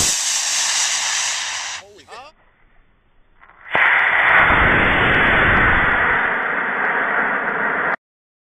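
Model rocket motor igniting and lifting off: a sudden loud rushing hiss that lasts about two seconds and fades away as the rocket climbs. After a short lull, a steady loud rushing noise with a low rumble starts about four seconds in and runs on.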